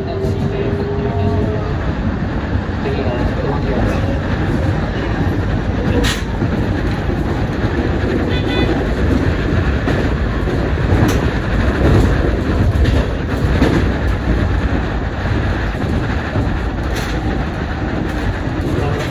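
Keikyu New 1000 series electric train running, heard from inside the front car: a steady rumble of wheels on rail, with the traction motor's whine rising briefly at the start, and sharp wheel clicks over rail joints and points, the plainest about six, eleven and seventeen seconds in.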